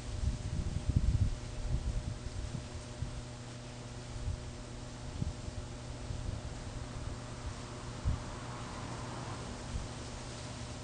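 Steady low electrical hum from the powered-up induction heater circuit, with low rumbling handling bumps, mostly in the first couple of seconds.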